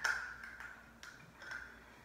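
Damp makeup sponge dabbing foundation onto the face: a few short, light ticks in the first second and a half, the first the loudest.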